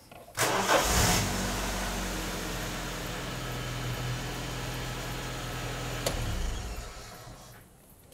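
A Toyota Corolla Seca's four-cylinder EFI engine is jump-started from a Noco GB20 pack and catches about half a second in. After a brief burst of revs it settles into a steady idle, which fades out near the end.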